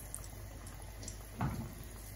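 Breaded yam slices frying in oil in a pan over medium heat, a faint steady sizzle, with one short knock about one and a half seconds in.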